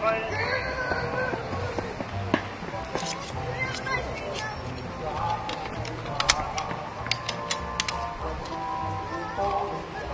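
Background music and chatter, with a quick run of sharp clicks about six to eight seconds in as rifles are handled.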